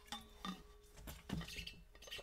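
A few faint clinks and light knocks from a metal water bottle being handled while someone drinks from it.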